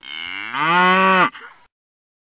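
A cow mooing: one long moo that rises in pitch at first, is held loudly, then cuts off suddenly after about a second and a half.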